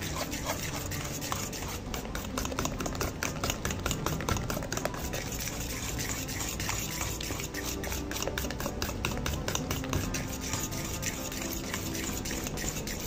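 Metal spoon stirring thick, wet banana cake batter in a stainless steel bowl, with quick repeated clicks and scrapes against the bowl.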